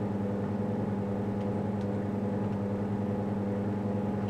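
Steady low electrical hum with a buzzy row of overtones from powered-up valve-amplifier test-bench equipment, unchanging throughout.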